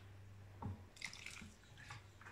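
Vinegar faintly trickling and dripping from a plastic jug into a glass jar of pickled lemons, with a few small drips as the pour tails off.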